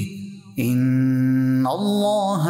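Quran recitation chanted in a melodic tajweed style: after a brief pause for breath, the reciter holds one long note that steps down in pitch and flows into the next phrase.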